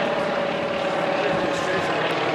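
Antonov An-2 biplane's nine-cylinder radial engine and propeller running steadily in low flight, an even engine note with no change in level.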